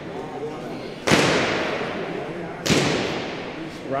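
Two loud, sharp bangs, the first about a second in and the second a second and a half later, each ringing out in a long echo; faint voices underneath.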